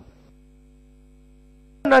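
Faint, steady electrical mains hum in the microphone feed, one low drone with several fixed overtones. A man's speech stops just at the start and starts again near the end.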